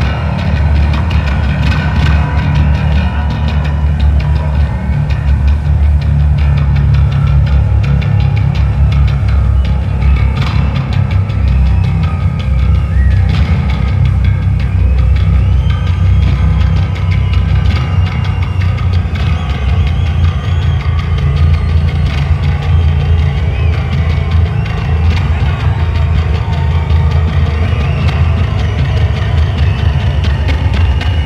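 A live electric bass guitar solo: low notes played loud through an arena PA, heard from within the audience.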